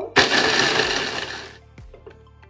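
Braun electric mini chopper running for about a second and a half as it chops carrot chunks, then cutting off.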